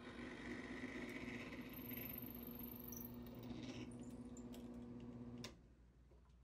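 Benchtop drill press motor running with a steady low hum, cutting off abruptly with a click near the end.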